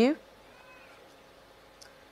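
Speech: a question ending on a drawn-out, rising "you?", followed by a pause holding only faint background noise.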